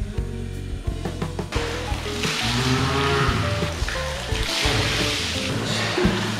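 Water poured and splashing from a metal bowl in two long pours, about a second and a half in and again near the end, as a hammam attendant rinses a bather's head, over background music with steady held notes.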